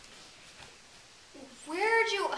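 A single drawn-out meow-like call, rising then falling in pitch, starting about a second and a half in.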